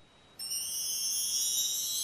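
A cartoon sound effect: a high, steady ringing tone made of several pitches at once, starting about half a second in.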